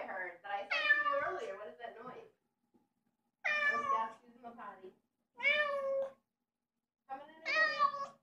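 A nine-month-old orange cat meowing repeatedly: four separate calls a second or two apart, most of them falling in pitch.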